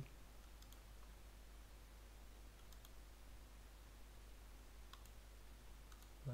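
Near silence with a few faint computer mouse clicks, spread out over several seconds, over a steady low hum.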